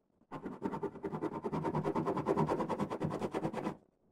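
Wax crayon scribbling rapidly back and forth on paper, about ten strokes a second, starting just after the beginning and stopping shortly before the end, as green is worked into turquoise blue to blend the layers.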